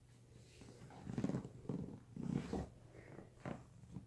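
Seven-week-old Maine Coon kitten growling in several short, rough bursts while mouthing a feather wand toy.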